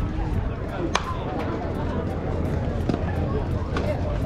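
Softball bat striking the ball once with a sharp crack about a second in, the hit that puts the batter on the run, over faint background voices and a steady low rumble.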